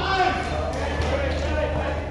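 A basketball being dribbled on a plastic-tiled court, a few bounces, with voices talking in the background.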